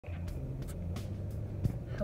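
Steady low hum inside a car's cabin, the drone of the engine and road heard from the seat, with a few faint clicks and one slightly louder knock a little past halfway.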